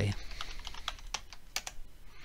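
Typing on a computer keyboard: a run of separate key clicks as a short word is entered.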